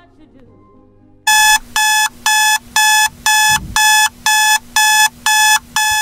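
Electronic alarm-clock beeping, starting about a second in and repeating evenly about twice a second.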